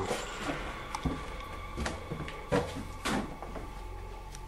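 Scattered scuffs and knocks of people moving about a small room, a few brief irregular bumps over a faint low hum.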